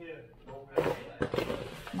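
A banana leaf crackling and rustling as it is folded by hand into a cone. It starts about a second in, as a dense run of sharp crinkling noises.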